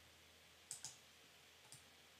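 Two quick computer mouse clicks in close succession a little under a second in, then a fainter single click a little before the end, over near silence.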